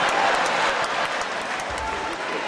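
Audience applauding, with crowd noise and scattered claps, slowly dying down in response to a stand-up comedian's punchline.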